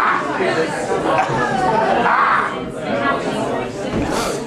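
Indistinct chatter: several people talking at once, with no single voice clear.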